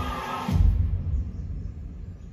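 Trailer soundtrack: music that is cut off about half a second in by a sudden, very deep cinematic bass hit, whose low rumble then slowly dies away.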